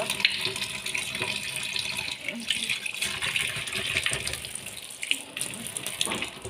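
Kitchen tap running, its water stream splashing into a stainless steel sink, with a few small knocks.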